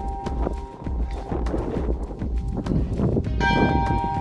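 Small chapel bell rung by hand, with a clear ringing strike about three and a half seconds in, over a fast, irregular run of clicks and knocks and a low rumble.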